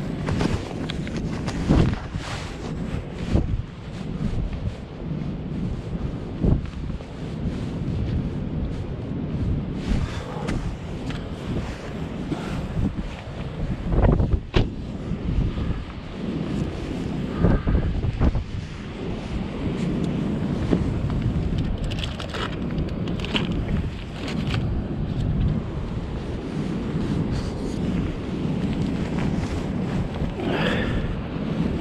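Wind buffeting the microphone in a steady low rumble, with scattered short knocks and rustles from gear being handled.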